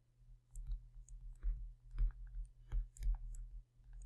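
Light, irregular clicks and taps from handwriting on a computer screen with a pointing device, over a faint steady low hum.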